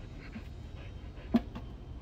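A dog panting over a low steady rumble, with one sharp knock about a second and a half in.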